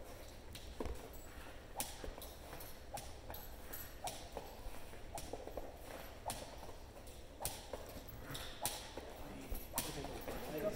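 Irregular sharp clicks and scuffs of a young dog's paws scrabbling and a man's feet shuffling on a rubber-matted floor while the dog tugs and shakes a rag.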